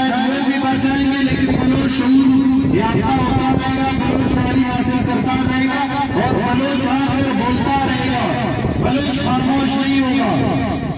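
A man speaking through a handheld microphone and portable loudspeaker, over a steady low hum that runs without a break.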